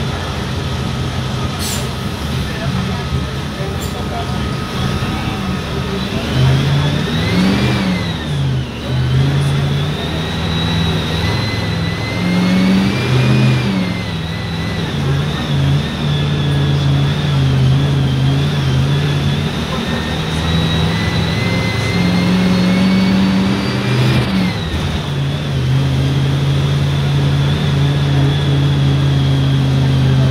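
Mercedes-Benz OF-1519 BlueTec 5 city bus's front-mounted diesel engine heard from inside the cabin, pulling away about six seconds in and accelerating through the gears. The engine note climbs and drops back at each of three upshifts, with a high whine rising and falling along with it.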